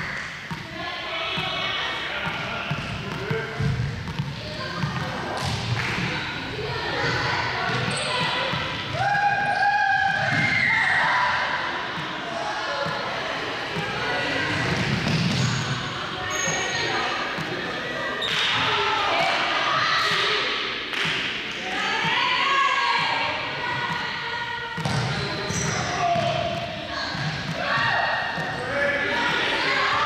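A small ball bouncing repeatedly off a hard sports-hall floor and being caught, while people talk in the background.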